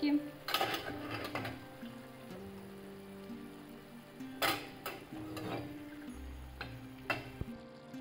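Raw chicken gizzards dropped into a frying pan of simmering tomato, sweet pepper and onion sauce, landing with a few soft, scattered splats over a quiet sizzle.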